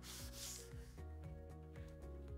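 A scouring pad wet with lacquer thinners scrubbing over a melamine cabinet door, a faint swishing rub strongest in the first second. Soft background music plays underneath.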